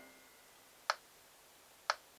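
Metronome ticking steadily at one click a second, two ticks in all, while the tail of the last piano chord dies away at the start.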